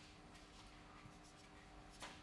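Near silence: a felt-tip marker drawing faintly on a whiteboard, over a faint steady hum.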